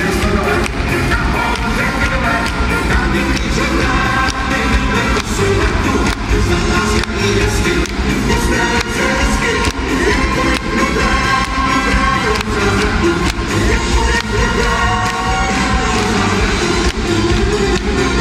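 Live band playing amplified music through a hall's sound system, with a steady beat and a strong bass, heard from the audience in a large reverberant hall.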